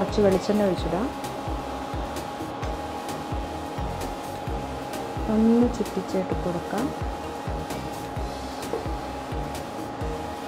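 Induction cooktop running, its cooling fan giving a steady hum with a constant whine, under background music.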